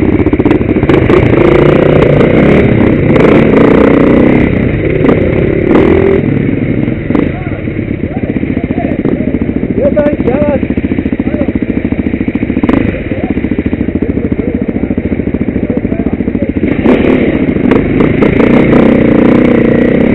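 Enduro dirt bike engines running loud and close to the microphone, idling with louder stretches of throttle near the start and again near the end.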